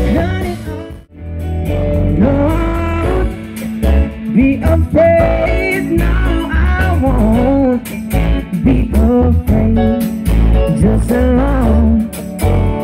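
Live pop-rock band playing, with electric guitar and bass under a gliding lead melody. The music dips almost to nothing for a moment about a second in, then comes back in full.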